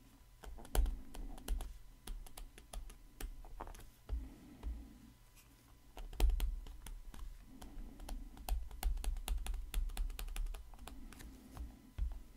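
Stylus tapping and scraping on a tablet screen during handwriting: irregular sharp clicks with soft thuds under them, busiest in the second half.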